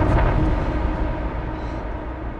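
Low rumbling tail of a cinematic trailer sound-effect hit, fading steadily over a faint held tone.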